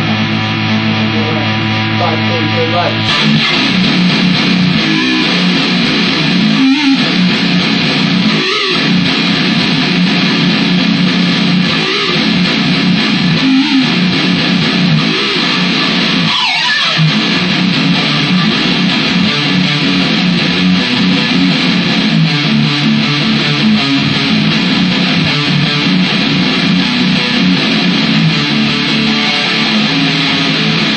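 Electric guitar played through an amplifier: a held low note rings for about three seconds, then dense, continuous riffing starts suddenly and keeps going.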